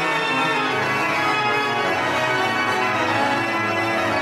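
Historic Spanish baroque pipe organ by Gaspar de la Redonda, played live: many sustained notes sound at once at a steady loudness, the bass notes shifting lower about half a second in.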